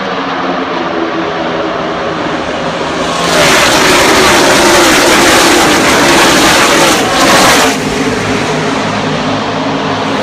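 A pack of NASCAR Cup Series stock cars with V8 engines at full throttle on a restart. After about three seconds of a quieter steady drone, the field passes close by: a loud engine roar lasting about four seconds, its pitch falling as the cars go past, then dropping back to a steadier drone.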